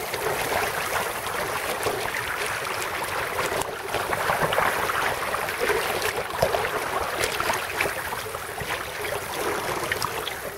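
Water rushing and splashing along the hull of a sailing duck punt moving through choppy water: a steady hiss broken by small irregular splashes.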